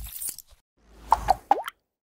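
Logo-animation sound effects: a brief swish, then about a second in a swelling rumble with two quick pops and a short upward-gliding bloop.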